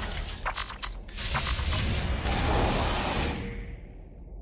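Sound-design effects for an animated product sting: a run of sharp mechanical clicks and ratchet-like ticks, two short very high beeps about one and two seconds in, then a whoosh that swells and fades away.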